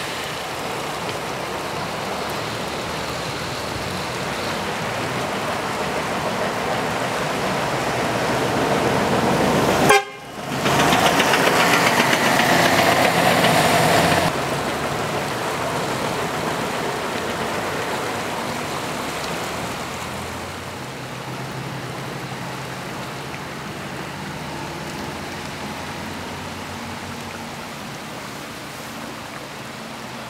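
Steady rush of a swollen, muddy river in flood. About ten seconds in, a break is followed by a louder stretch of about four seconds with a held tone above the water noise.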